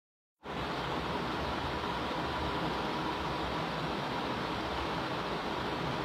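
Dead silence, then about half a second in a steady hiss with a low hum and a faint steady tone starts abruptly and runs on unchanged.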